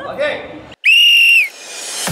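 A referee's whistle gives one short, steady blast of just over half a second, about a second in, signalling the penalty kick to be taken.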